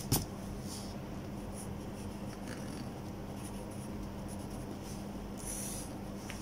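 Pencil writing on paper: a short scratch at the start, then faint scattered strokes, the loudest near the end, over a steady low hum.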